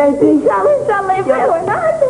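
Girls' high-pitched voices in short calls that slide up and down in pitch.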